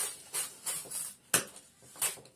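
Scissors cutting through a sheet of wrapping paper: a run of short, crisp snips and paper crackles, about three a second, the loudest about 1.3 seconds in.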